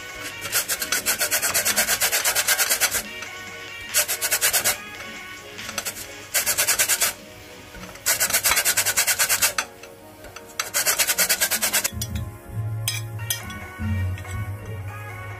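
Rasping strokes of food rubbed across a flat stainless-steel hand grater, in five quick runs of a second or two each with short pauses between.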